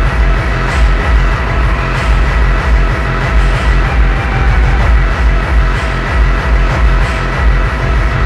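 Dark doomcore/hardcore electronic track: a heavy kick drum pounding in a steady beat under dense, dark synth layers, with a thin sustained high tone running through.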